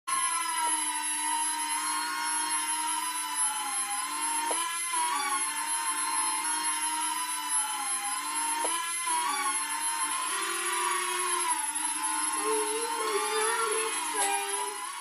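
Air Hogs Millennium Falcon toy quadcopter's small electric motors and propellers whining in flight, the pitch wavering up and down as the throttle is worked.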